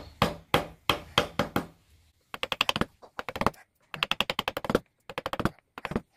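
Steel wood-carving chisel cutting into a wooden relief board: a run of sharp knocks about three a second, then from about two seconds in, four bursts of quick rapid tapping.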